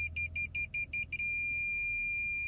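2018 Toyota Camry's parking-sensor warning beeping while reversing toward an obstacle. The high beeps come about five or six a second, then merge into one continuous tone about a second in, the sign that the obstacle is very close.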